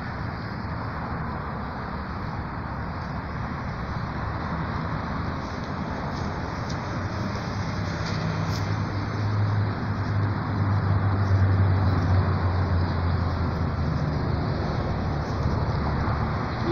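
Steady road traffic noise, with the low drone of a heavier vehicle's engine building up past the middle and easing off near the end.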